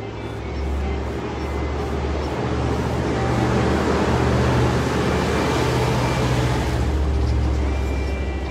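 A road vehicle passing: a rushing noise that builds over the first few seconds, peaks around the middle and eases off near the end, over a low steady hum.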